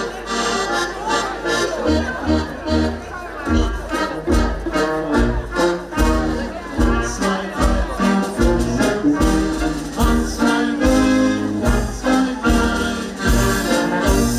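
Live folk band with brass instruments playing a dance tune, with a pulsing bass line that comes in about two seconds in.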